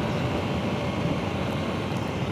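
KTM 890 Duke R's parallel-twin engine running steadily in third gear at about 60 km/h on cruise control, under a steady rush of wind and road noise.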